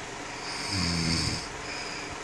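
A sleeping man snoring: one low snore begins about half a second in and lasts about a second. It is followed by a fainter, short breath near the end.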